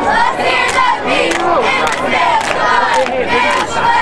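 Football spectators in the stands yelling and shouting as a play starts, many voices overlapping, with frequent sharp clap-like knocks mixed in.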